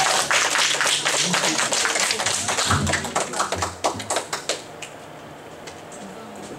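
Audience applauding after a piece, the clapping thinning out and stopping about four and a half seconds in.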